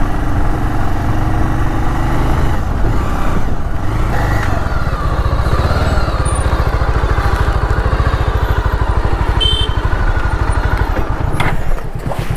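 Motorcycle engine running as the bike rides along a rough dirt road and slows down, its even low firing beat growing clearer toward the end as the bike comes almost to a stop.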